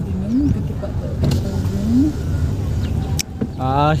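Car engine and road rumble heard from inside a moving car, steady and low throughout, with short voice sounds over it and a voice with a wavering pitch near the end.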